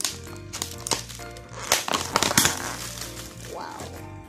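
Clear plastic takeaway meal-tray lid being pulled open: a burst of crackling plastic about halfway through, with a few lighter clicks before it, over background music.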